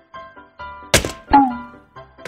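Light background music with repeating plucked notes, cut across near the middle by two loud thuds less than half a second apart, the second trailing off in a short falling tone.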